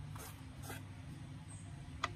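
Hands rubbing and smoothing soft impression clay in a baby keepsake frame's tray: two short scratchy swishes, one about a quarter second in and one near the middle, over a steady low hum.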